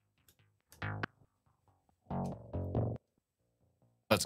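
Electronic remix playing back from stems: a bass part in two short phrases with gaps between, run through a compressor set to hold it down hard so that it comes out very quiet.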